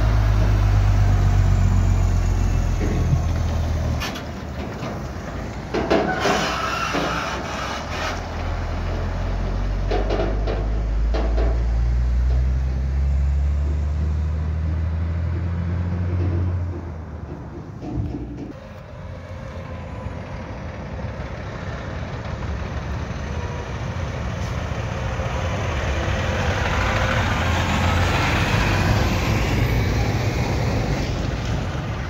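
Heavy diesel trucks going by: a deep engine note at first, then an engine pulling away and rising in pitch, with a few short hisses, and near the end a big truck rolling past close with loud tyre and road noise.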